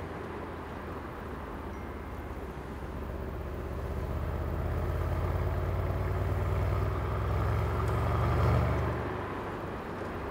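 Mercedes-AMG C63 S twin-turbo V8 with an Akrapovič exhaust, heard from inside the cabin while driving in traffic. The low engine drone builds from about three seconds in, is loudest near the end, then falls away about a second before the end.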